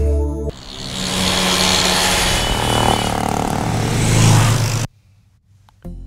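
A rushing whoosh with a low rumble underneath, swelling for about four seconds and then cutting off suddenly: a scene-transition sound effect. A short stretch of near silence follows.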